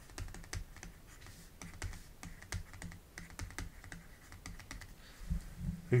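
Faint, irregular taps and scratches of a stylus on a pen tablet during handwriting, over a faint low hum.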